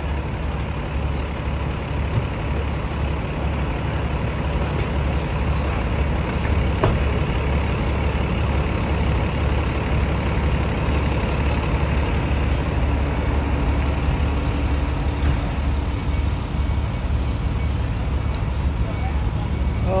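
Steady low rumble of an idling diesel truck engine amid street noise, with no sudden events.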